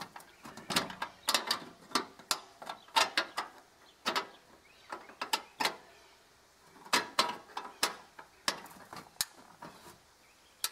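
Sharp metallic clicks and clanks in irregular clusters as a steel coupling band is fitted and worked tight around the joint of two galvanized corrugated steel culvert pipes.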